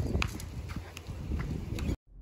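Footsteps in sandals on a concrete driveway: a string of light, irregular clicks and slaps.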